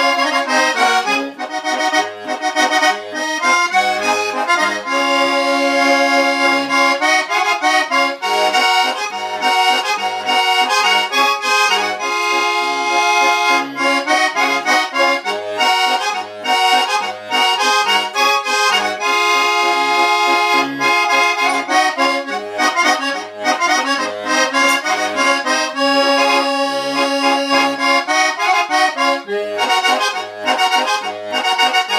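Two-bass diatonic button accordion (Abruzzese organetto 'ddu bbotte') playing a traditional tune: a melody over sustained chords, with short bass notes pulsing at a regular beat underneath.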